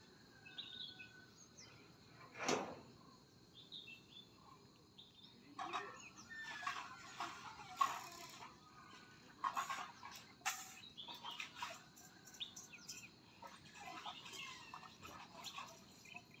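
Faint birds chirping, with short high calls scattered throughout. A brief, louder noise comes about two and a half seconds in.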